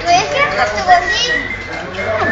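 A pet parrot vocalizing in a chattering, speech-like voice, with quick rising chirps and then a held high whistled note in the second half.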